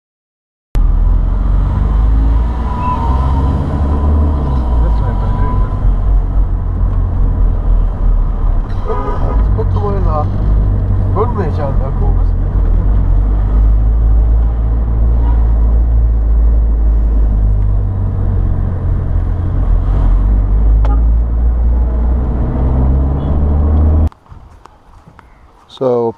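Steady, loud low rumble of engine and road noise heard from inside a moving car in town traffic. A few brief pitched sounds come about nine to twelve seconds in, and the rumble cuts off near the end.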